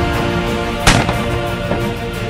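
A single shot from a Caesar Guerini Invictus I Sporting 12-gauge over-under shotgun, one sharp crack about a second in, fired at a flying clay target. Background music plays underneath.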